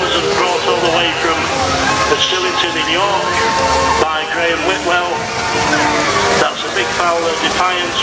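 People talking close by, over the low running of a steam wagon driving slowly past.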